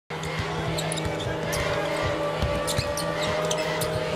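A basketball being dribbled on a hardwood court, a series of short knocks, over the steady hum of an arena crowd.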